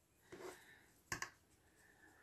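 Near silence with faint handling noise: a soft rustle about a third of a second in and a short double click a little after one second, from hands working a small woven band against a yarn pom-pom.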